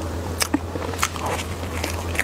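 Close-miked mouth sounds of eating soft cream cake: wet chewing and lip smacking with three sharp clicks, over a steady low hum.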